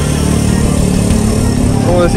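A motor vehicle engine idling with a steady low rumble. A voice starts right at the end.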